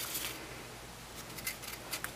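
Faint handling sounds of paper and adhesive as a paper tassel is stuck onto card stock with a mini glue dot, with a few light ticks near the end.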